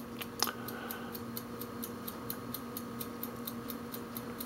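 Steady fast ticking, about four ticks a second, over a low electrical hum, with a single computer mouse click about half a second in as a menu tab is selected.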